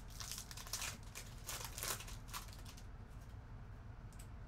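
Plastic wrapper of a Panini Mosaic football card pack crinkling as it is torn open and the cards pulled out, in a run of short crackly bursts that die away about three seconds in.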